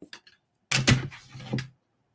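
A dark plastic die-cutting plate and die packaging being picked up and moved off a craft mat. There are a few light clicks at the start, then a cluster of knocks and rattles about a second in.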